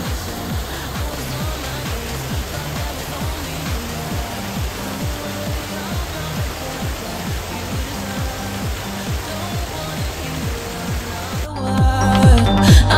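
Small waterfall splashing over rocks into a pool, a steady rushing hiss, with electronic music's kick-drum beat continuing underneath at about two beats a second. The water cuts off just before the end as the music swells back in.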